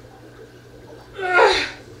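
A woman's short, loud vocal outburst a little over a second in, falling in pitch, with a breathy edge.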